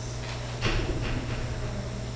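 Steady electrical hum and room tone, with a short sound about half a second in.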